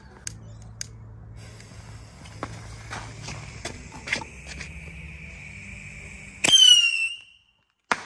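Small firework rocket: the lit fuse hisses and crackles for several seconds, then the rocket takes off with a loud whistle. A sharp bang near the end is its burst in the air.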